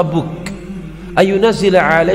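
A man's voice speaking, starting again a little over a second in, over a steady low background drone.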